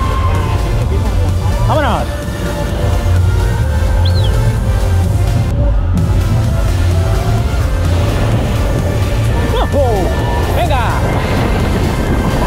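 Fairground music over a heavy, steady low rumble of wind buffeting the microphone as the Booster ride swings through the air. A few brief rising-and-falling cries from riders come through, once about two seconds in and twice near the end.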